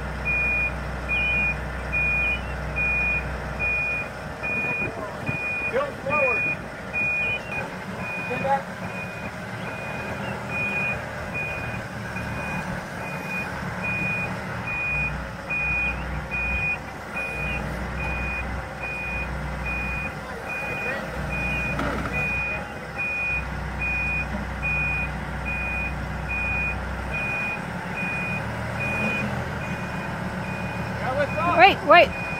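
Telehandler's back-up alarm beeping steadily, about one and a half beeps a second, over the machine's engine running.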